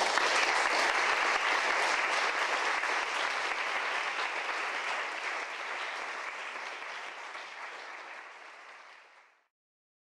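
Audience applauding, slowly dying down, then cut off to silence a little after nine seconds in.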